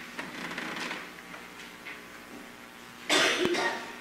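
A person coughs sharply about three seconds in, in a quiet room with a faint steady hum; softer noise, like breathing or a small movement, comes in the first second.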